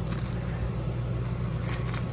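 A steady low hum in the room, with faint rustles and scrapes from a vinyl record jacket in a plastic outer sleeve being handled.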